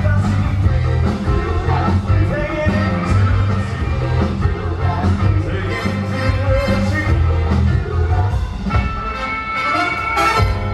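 Live cover band playing a song through stage speakers: singing over drums, saxophone and keyboards, with a heavy, steady bass beat.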